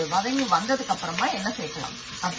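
Sliced onions sizzling in hot oil in a stainless steel pot as a wooden spoon stirs them, with a person's voice wavering in pitch over the sizzle.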